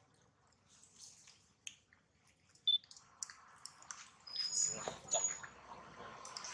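Faint wet sucking and clicking of a newborn macaque suckling at its mother's nipple, busier in the second half, with a few short high chirps.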